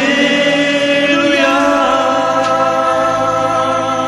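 French Christian song: voices singing long held notes, moving to a new chord about a second and a half in.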